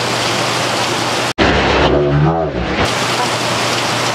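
Steady, loud rushing noise of water, cut off abruptly just over a second in by an edit; a brief muffled voice sounds in the middle before the rushing resumes.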